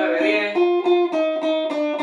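Jackson V-shaped electric guitar with humbuckers: single notes picked rapidly on the G string, each note repeated several times, stepping up in pitch about half a second in and then back down in small steps.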